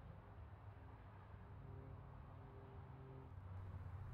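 Near silence: a faint, steady low rumble of background noise.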